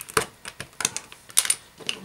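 LEGO plastic bricks and plates clicking and clacking against each other and the tiled surface as they are handled, with several sharp clicks scattered through.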